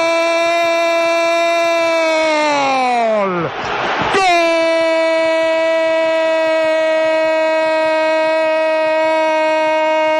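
Radio commentator's long drawn-out goal cry, "Gooool", held on one high sustained note announcing a goal. About three seconds in the voice sags in pitch and breaks off for a quick breath, then the held cry starts again.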